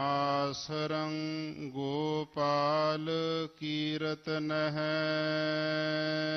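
Sikh kirtan: a voice singing a line of Gurbani in slow, bending melismas and then one long held note, over a steady harmonium drone.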